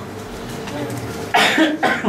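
A person coughs twice in quick succession about a second and a half in, the first cough the louder.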